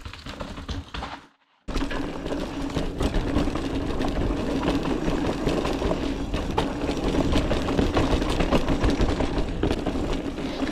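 Hardtail mountain bike, a Voodoo Bizango 29er, rumbling and rattling as it rides fast over a bumpy dirt trail, picked up by a chest-mounted action camera. The sound cuts out briefly about a second in, then the riding noise runs on steadily.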